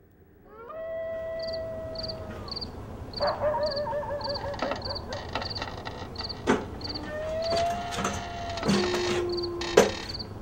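Night ambience fading in: crickets chirping about twice a second under long, wavering howl-like tones that bend in pitch. A few sharp knocks cut through, the loudest near the end.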